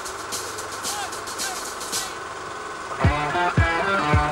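Rock band music: a held electric guitar chord rings over fast cymbal ticks. About three seconds in, the drums and guitars come in together, with a low drum hit about twice a second.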